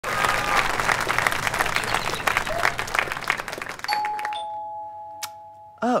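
Audience applause that dies away about four seconds in, followed by a two-note doorbell chime, a higher tone and then a lower one, ringing on for about two seconds.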